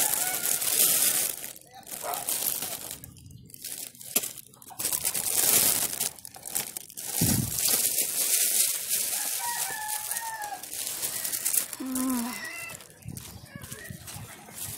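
A thin plastic bag crinkling and rustling as it is handled, in uneven bursts with short pauses. A few faint, short, falling high calls sound under it.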